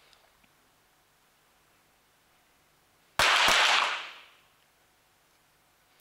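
Two .22 sport pistol shots about a third of a second apart, a little over three seconds in, echoing loudly through the indoor range hall for nearly a second: each finalist firing her third shot.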